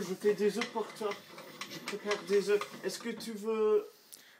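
A high-pitched voice talking softly throughout, its words not made out.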